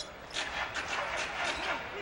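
Basketball being dribbled on a hardwood court, a run of repeated bounces over the steady murmur of an arena crowd.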